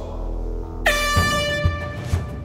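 Handheld canned air horn blown in one long, steady, high-pitched blast starting just under a second in, over background music with regular drum beats.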